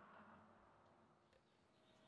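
Near silence: the sound track is almost empty.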